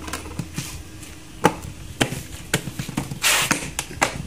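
Sharp clicks and knocks of plastic refrigerator interior parts being handled and fitted, a few of them about half a second apart, with a short rustling hiss near the end.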